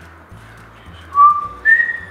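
A woman whistling two clear, held notes, the second higher than the first, starting about a second in.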